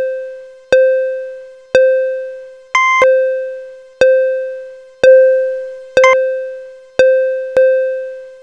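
Countdown-timer sound effect: a ringing electronic tone struck about once a second, each one fading away before the next. A higher tone breaks in briefly near three seconds in, and again around six seconds.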